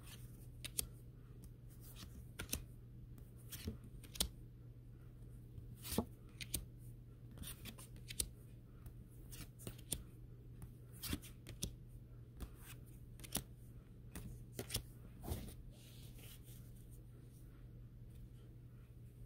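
Tarot cards being flipped through one at a time in the hand, each card slid off the stack with a faint, sharp snap in an irregular run. A steady low hum lies underneath.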